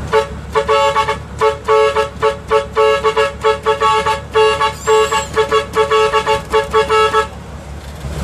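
Leyland truck's chain-pulled air horn blown in a fast rhythmic pattern of short two-note blasts, about three a second, stopping shortly before the end. The engine runs underneath.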